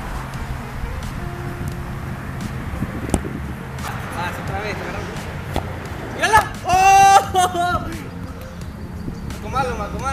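Soccer balls being kicked on an outdoor pitch: a few sharp knocks over a steady low outdoor rumble. Past the middle, a person's voice calls out loudly for about a second and a half.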